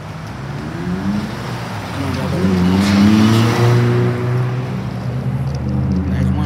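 A car accelerating past close by, its engine pitch rising, with the loudest rush of tyre and engine noise about three seconds in. A steady low engine drone follows.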